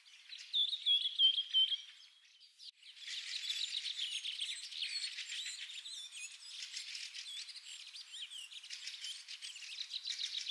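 Small birds chirping and twittering in a busy chorus, thin-sounding with no low end. It opens with a loud run of repeated chirps, drops away briefly about two seconds in, then resumes.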